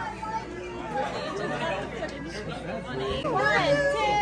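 Indistinct chatter of several people talking at once in a small crowd, growing louder with rising and falling voices near the end.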